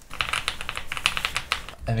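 Fast typing on a custom aluminium-cased mechanical keyboard fitted with hybrid 'Creamsicle' switches: a dense, rapid run of keystrokes with a clacking sound like marbles knocking together.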